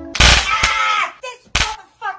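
A loud sudden crash and a cry as a woman falls back onto a bed, with a second sharp bang about a second and a half in.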